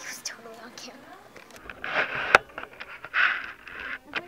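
Indistinct voices, then a few short bursts of hissing, rustling-like noise and one sharp click about two seconds in.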